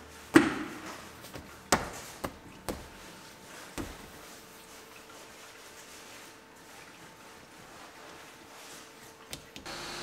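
Leather-covered rear seat cushion of a 2012 Lexus IS250 being pushed down so its front clips snap into place: a sharp knock about half a second in, then four lighter knocks over the next few seconds.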